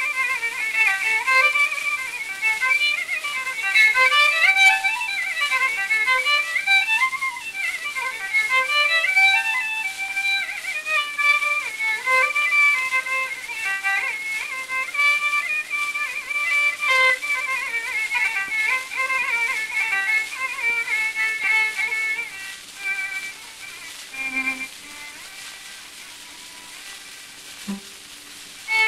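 Solo Carnatic violin playing a phrase in Mukhari raga, full of sliding ornaments, from a 1930s shellac 78 rpm disc with surface hiss. Near the end the playing drops to a quiet pause.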